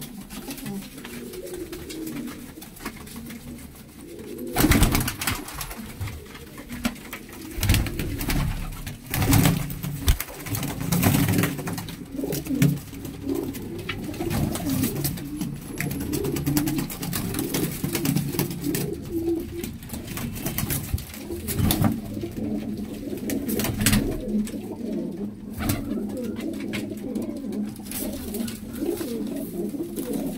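Domestic pigeons cooing continuously, several birds at once. Scattered sharp knocks cut through the cooing, the loudest about four and a half seconds in.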